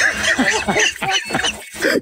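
Men laughing hard: a quick run of short, throaty laughs with a couple of brief breaks for breath.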